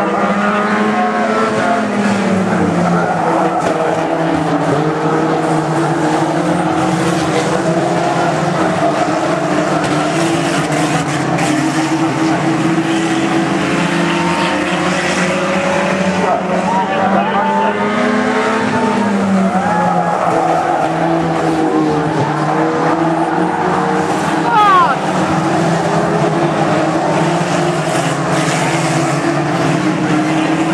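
Several banger racing cars' engines running and revving around a short oval, their pitch rising and falling as they pass. There is a brief louder moment about 25 seconds in.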